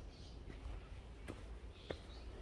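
Footsteps of a walker on a forest trail, three steps, over a low steady rumble, with faint bird chirps.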